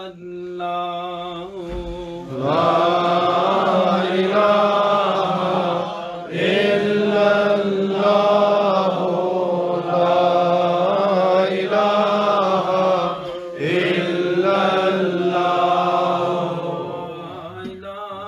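Men's voices chanting zikr, the Sufi remembrance of God, in long drawn-out phrases. The chant starts quietly, then swells in several long phrases with brief breaks between them and eases off near the end.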